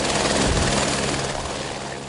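Helicopter flying by, a steady rotor and engine noise that gradually fades.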